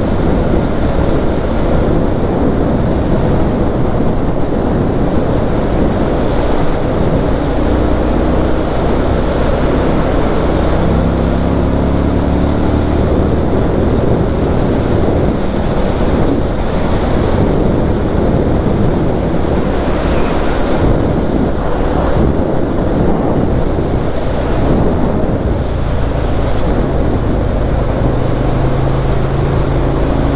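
Heavy wind noise buffeting the microphone over an Indian FTR1200's V-twin engine at road speed. The engine note shifts in pitch through the middle and settles to a steady drone near the end.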